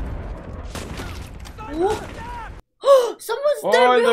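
Battle sounds from a war drama: a low rumble of gunfire and explosions that cuts off abruptly about two and a half seconds in. After a moment of silence, a woman lets out a loud, drawn-out wordless exclamation.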